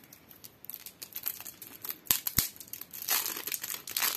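Thin plastic shrink-wrap being torn and peeled off a small card-deck box, with a run of crinkling and crackling. Two sharp clicks come a little past halfway, and a louder crinkle follows about three seconds in.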